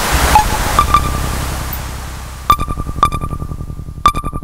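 Serge Paperface modular synthesizer patch: a wash of noise fades away with a few ringing, pitched pings in the first second. About two and a half seconds in, a fast clicking pulse pattern starts, with ringing pings on one pitch.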